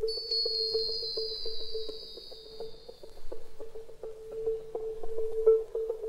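Synthesizer intro of a synth-pop record. A steady, pulsing mid-pitched tone plays throughout, with light clicks. A high whistling tone comes in at the start, slides slowly down and fades out about three seconds in.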